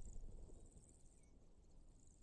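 Near silence with a faint, high-pitched chirring, most noticeable in about the first second.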